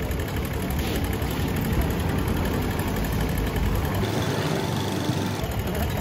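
Steady street noise of traffic running and idling close by, a continuous low rumble with a general hiss over it. The deepest rumble drops away for a moment about four seconds in.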